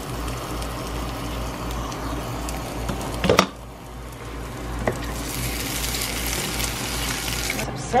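Eggs frying in a skillet, a steady sizzle, with a sharp knock a little over three seconds in.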